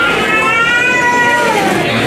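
A man chanting into a microphone in the style of Quran recitation: one long held melodic note that rises and then falls over about a second and a half.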